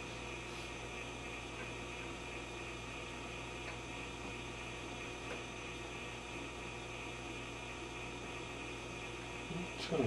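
Steady low hum and hiss from a running Admiral 24C16 vacuum-tube television chassis, with a few faint ticks.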